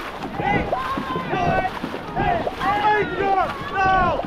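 Dragon boat crew shouting and calling out while paddling, over the splash of paddles in the water and wind on the microphone.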